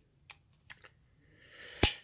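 Small metallic clicks from a stainless Ruger GP100 revolver being handled: a few faint ticks, then one sharp click near the end.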